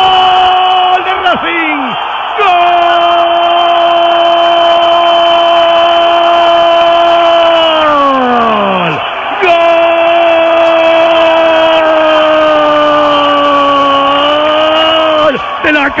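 A Spanish-language radio commentator's drawn-out goal cry for a penalty just scored, in two long held shouts. The first lasts about six seconds and drops sharply in pitch as it runs out; the second follows after a short breath. A stadium crowd is heard underneath.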